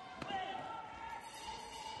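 A sharp thud about a fifth of a second in as the karate fighters clash, with a short shout just after it. A steady murmur of voices fills the sports hall behind.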